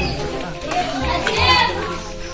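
Young voices talking and calling out while walking, with one loud, high-pitched call about one and a half seconds in.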